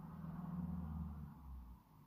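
A woman's low closed-mouth 'mmm' hum while she thinks, steady and fading out near the end.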